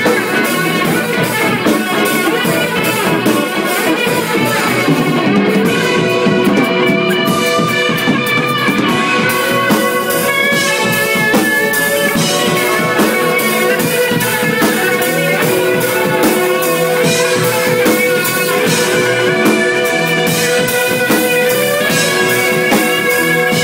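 Live rock jam on electric guitar and drum kit: steady drumming with cymbals, and from about five seconds in the guitar holds long sustained notes over it.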